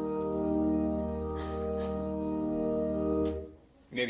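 Church organ holding a sustained chord that stops about three and a half seconds in.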